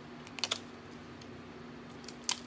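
Cooked shrimp shell being peeled by hand: a quick cluster of two or three sharp clicks about half a second in, over a faint steady hum.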